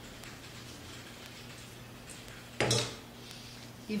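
Faint scraping of a spatula against a stainless steel bowl as beaten egg whites are scraped into a pot, then a single loud clank of kitchenware about two and a half seconds in.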